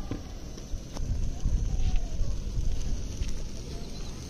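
Wind buffeting the microphone: a low, uneven rumble that swells through the middle, with a few faint clicks.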